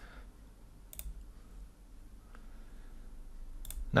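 Two sharp computer mouse clicks, one about a second in and one near the end, with a fainter click between them, over a low steady hum of room tone.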